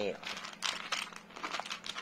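A hand rummaging through small wooden rune tiles in a wooden box, giving an irregular run of light scraping and clicking.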